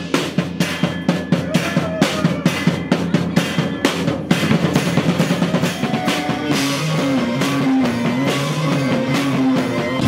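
Live band music led by a drum kit playing a quick beat of snare, bass drum and cymbals, about four strokes a second. About six seconds in, a sustained melodic instrument line comes up over the drums.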